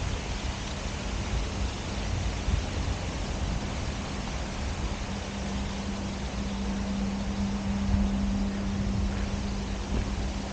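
Wind rushing over a handheld 360 camera's microphone, a steady hiss with an uneven low rumble, joined by a steady low hum that grows louder past the middle and then fades.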